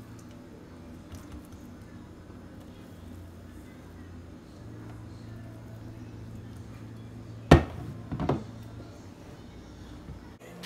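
A silicone spatula scraping thick, sticky brigadeiro candy mixture out of a saucepan onto a ceramic plate, over a steady low hum. Two sharp knocks come about seven and a half and eight seconds in, the louder one first.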